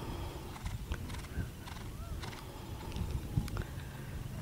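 A cantering horse's hooves landing on grass turf, heard as a run of low thuds.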